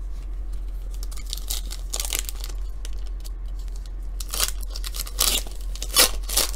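Foil wrapper of a trading-card pack being torn open and crinkled, in several short rustling bursts, the loudest near the end.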